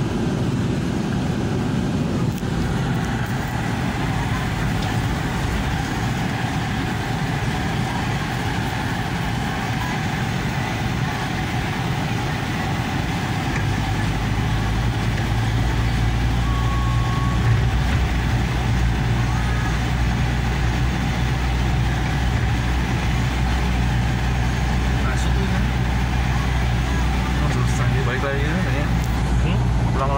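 Vehicle engine running, heard from inside the cabin as a steady hum that grows louder and deeper about halfway through.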